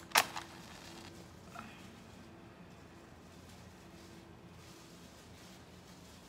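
A match struck once on its matchbox just after the start: a single short, sharp scrape. After it there is only faint room tone.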